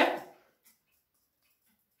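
A woman's voice trailing off at the end of a word, then near silence: room tone.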